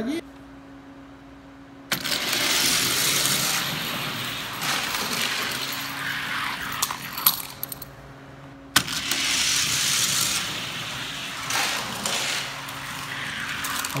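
Die-cast toy cars rolling down a plastic drag track, a hissing, rattling run that starts suddenly about two seconds in and again past the middle, with a few sharp clacks.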